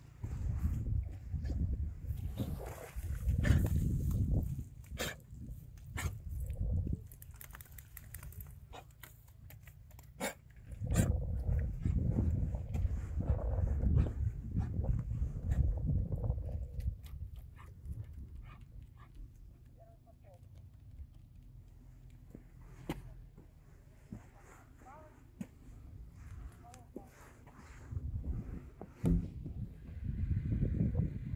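Footsteps on a corduroy road of loose wooden logs across a bog, with scattered knocks as the logs shift underfoot, and wind buffeting the microphone in gusts.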